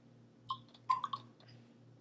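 A few short clicks and squeaks from a plastic eyedropper being squeezed and handled, bunched about half a second to a second in, over a low steady hum.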